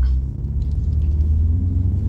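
Low, steady rumble of a BMW M5 heard from inside the cabin as it moves off with its drive mode in comfort.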